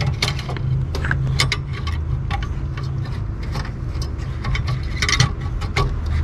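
Irregular small clicks and taps as a D1S xenon bulb is pushed and worked into its seat in a BMW F30 headlight housing, metal retaining bracket and plastic knocking together, over a steady low hum.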